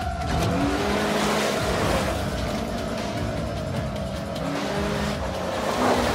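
Kawasaki Ridge side-by-side accelerating hard under rock music, with a loud rush as it speeds past near the end.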